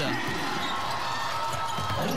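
Basketball being dribbled on a hardwood court over steady arena crowd noise.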